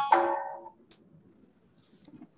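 A short held tone, voice or music, fading out within the first second, then near silence.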